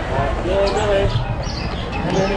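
A person's voice talking briefly in the background over a steady low rumble.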